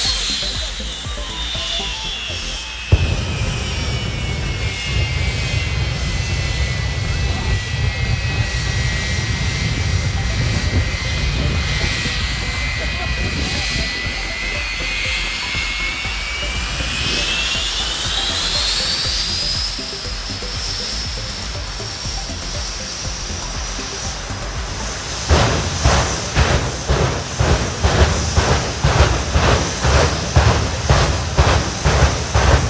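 Jet engine of a jet-powered show truck running, its whine gliding slowly down and then climbing again over a steady rumble. Near the end a rapid run of pulses sets in, two or three a second.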